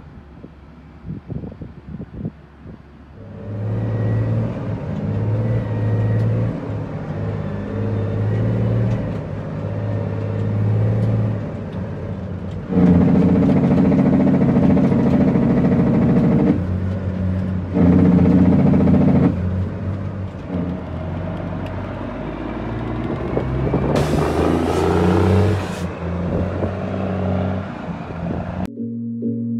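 International 9900ix dump truck's diesel engine working through the gears. It comes up about three seconds in and pulls under load in stretches, its note dropping away briefly at each shift. A short hiss comes near the end.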